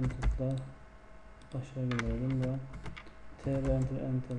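Keystrokes on a computer keyboard, a scattering of sharp clicks, with a man's low, drawn-out voice that forms no clear words sounding over them at the start, in the middle and near the end.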